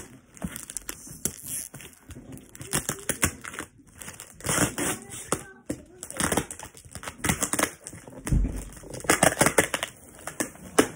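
Packing tape and cardboard of a shipping package being picked at and pulled: irregular crinkling and tearing, the tape hard to get open. A low thump comes a little past eight seconds in.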